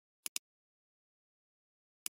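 Computer mouse button clicking: two quick, sharp clicks about a tenth of a second apart, a little way in, with dead silence around them.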